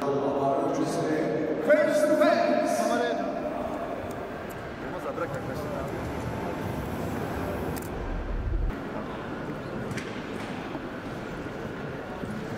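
A man's voice through a microphone, loudest in the first three seconds, then the steady murmur of a large hall with a short low rumble about eight seconds in.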